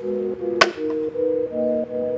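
Background music of held, slowly changing chords, with one sharp knock about half a second in: a plastic water bottle landing upright on the ground after a flip.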